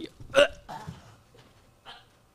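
A man's sharp, hiccup-like vocal burst about half a second in, followed by a short breathy sound and a faint second burst near the end.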